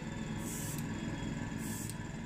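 Gravity-feed airbrush spraying a light coat of paint in two short hisses, about half a second in and again near the end, over a steady low hum.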